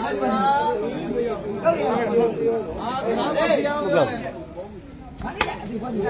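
Crowd chatter: several men's voices talking over one another, dying down after about four seconds. A single sharp smack comes near the end.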